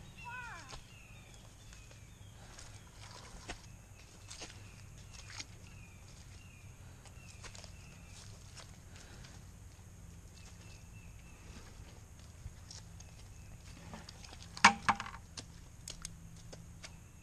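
Faint, uneven footsteps crunching through dry leaves and brush on a wet woodland trail, with a few quiet high chirps behind them. A brief louder noise comes about a second before the end.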